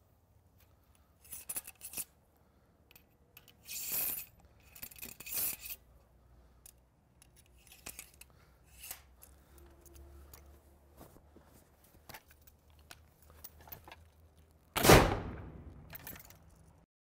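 Reproduction Revolutionary War flintlock musket being loaded and fired. First comes a series of brief handling sounds: the paper cartridge tearing, clicks from the lock and pan, and the ramrod rattling in the barrel. About a second before the end the musket fires with one loud shot that rings off.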